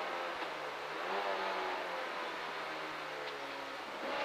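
Peugeot 205 F2000 rally car's four-cylinder engine heard from inside the cabin, over road and wind noise, as the car works through a chicane: the engine note dips, picks up about a second in, then eases down slowly.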